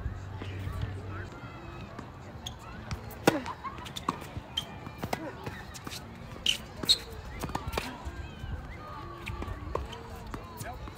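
Tennis rally on a hard court: sharp racket-on-ball strikes and ball bounces every second or so, the loudest around three seconds in and again near seven seconds.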